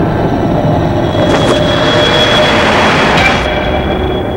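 Loud, dense rumbling sound design from a horror trailer's soundtrack. A thin, steady high whine comes in a little over a second in, with two short hissing surges over the rumble.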